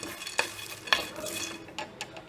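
Whole spices (cardamom, cloves, mace, dry ginger, black pepper and cinnamon sticks) being stirred as they roast in a metal pan: a dry rattling rustle with about three sharper scraping strokes.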